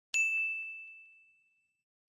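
A single bright ding, a notification-bell sound effect. It is struck once just after the start and rings away to nothing over about a second and a half.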